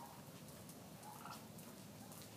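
Wild turkeys making two faint short calls, about a second apart, over quiet background.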